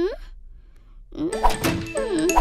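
A short rising vocal sound from a cartoon character. After about a second of quiet, playful cartoon music starts, with sharp hits and sliding notes.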